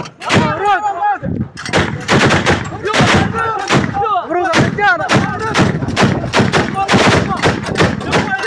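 Repeated gunshots from firearms, a few shots a second in an irregular run, with men shouting between and over them.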